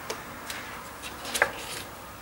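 A photobook page being turned by hand: a few light clicks of paper and fingers, the loudest about one and a half seconds in, followed by a short paper rustle.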